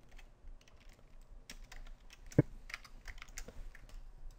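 Typing on a computer keyboard: quick, irregular keystrokes, with one louder keystroke a little past halfway.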